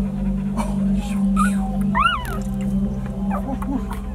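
Newborn puppies whimpering: several short high squeaks that rise and fall in pitch, the loudest about two seconds in, over a steady low hum.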